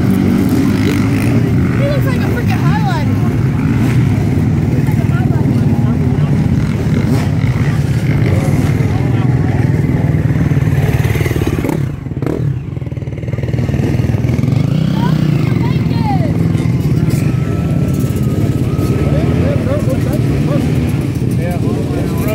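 Many dirt bike engines running together, a steady loud drone with occasional revs, dipping briefly about halfway through. Voices can be heard over it.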